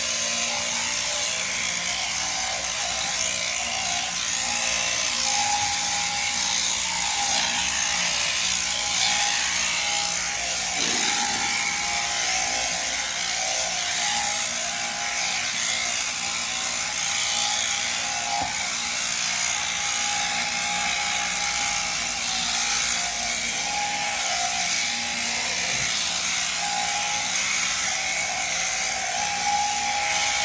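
Sheep-shearing handpiece on a jointed drive shaft running steadily with an even hum as its comb and cutter clip through the fleece.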